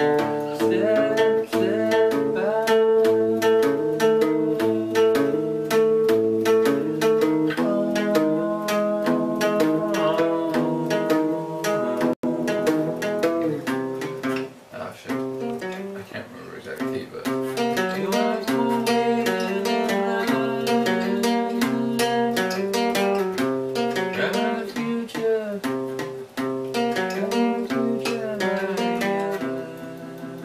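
An acoustic guitar playing a song, with a voice singing along. The playing thins out briefly about halfway through.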